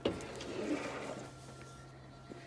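Metal garden gate being opened: a sharp latch click, then about a second of scraping as it swings, fading away.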